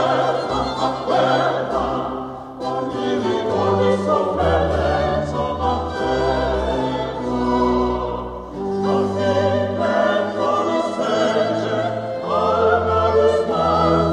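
A small group of mixed voices singing early Italian baroque sacred music in sustained, overlapping lines, accompanied by a baroque continuo ensemble with held low bass notes.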